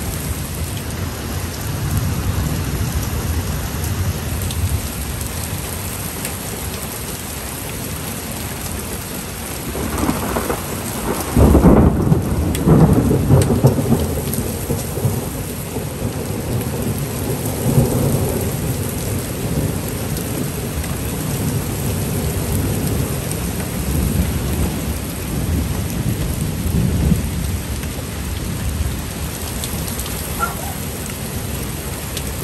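Heavy thunderstorm downpour hissing steadily on the yard and patio. About ten seconds in, a loud clap of thunder breaks and rolls on as a rumble for several seconds, with a further swell a few seconds later.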